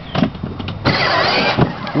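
Grave Digger battery-powered ride-on toy truck setting off, its drive running, with a loud burst of noise lasting under a second about halfway through.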